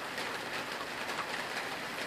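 Rain falling steadily, an even hiss.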